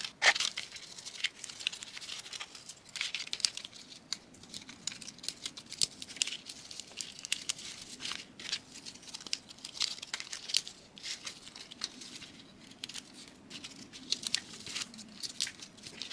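Small cardboard jigsaw puzzle pieces handled, slid and pressed together on a tabletop: irregular light clicks, taps and scrapes.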